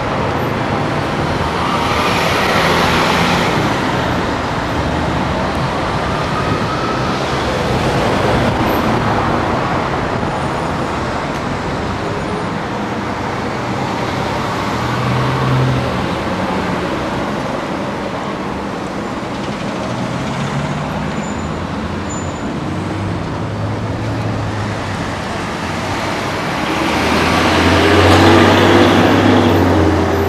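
City street traffic: a steady wash of road noise with the low hum of vehicle engines rising and falling as cars pass, and a louder passing vehicle near the end.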